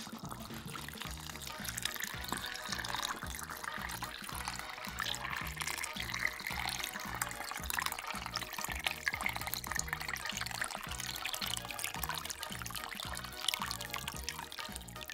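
Background music with a steady beat, over water pouring in a thin stream from a plastic pitcher into a four-cube silicone ice mold.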